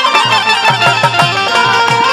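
Live Bhojpuri folk music: a drum beats a quick, steady rhythm, about four or five strokes a second, with each stroke dropping in pitch. A melody line plays over it, and brass hand cymbals clash along with the beat.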